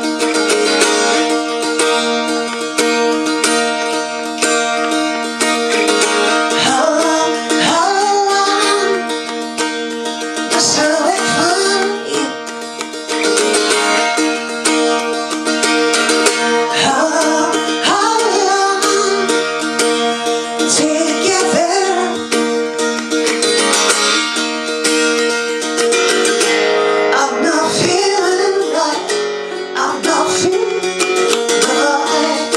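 A rock song played live on a strummed acoustic guitar, with a woman's voice singing over it from about seven seconds in.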